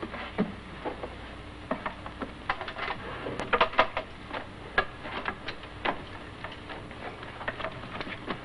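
Irregular light knocks, clicks and rustling from a person rummaging hurriedly at a wooden dresser and handling objects and clothes, busiest in the middle of the stretch.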